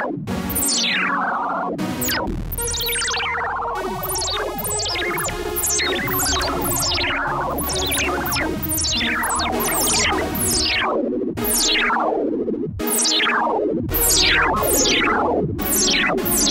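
Fender Chroma Polaris analog polysynth played directly, with no effects, in a run of notes and chords. Its filter resonance is set almost at maximum, so each note opens with a sharp downward sweep of the resonant filter, one to two sweeps a second.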